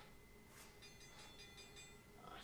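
Near silence, with a faint, high-pitched chiming run of quick pulses starting about a second in and lasting about a second, from a Tabata interval-timer app on a phone.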